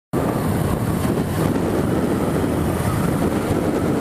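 Steady wind and road noise from a motorcycle riding at speed, with wind rushing over the handlebar-mounted camera's microphone and the bike's engine blended in underneath.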